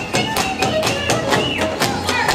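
Live Moldavian Csángó folk dance music: a fiddle melody over a quick, steady beat on a large double-headed drum.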